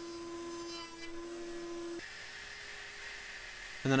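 Router spinning in a router table, with dust-collection suction on the cut, giving a steady whine. About halfway through it switches abruptly to a quieter, different steady hiss.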